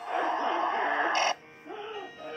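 Loud, harsh distorted scream that cuts off suddenly about a second and a third in, over eerie background music.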